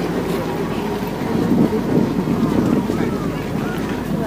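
Steady low rumble under faint outdoor crowd chatter, the rumble swelling for a second or two in the middle.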